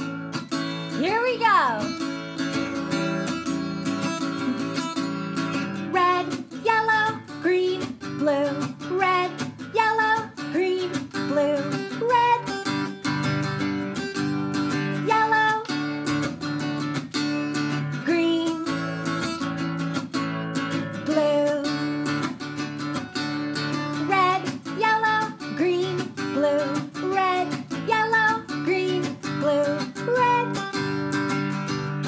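Taylor acoustic guitar strummed in a steady rhythm, with a woman singing a children's song over it from about six seconds in.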